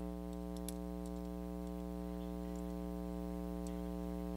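Steady electrical mains hum with a stack of even overtones on the broadcast audio line, with a few faint clicks.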